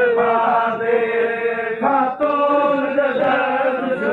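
Vocal chanting in long held notes, breaking briefly about two seconds in before carrying on.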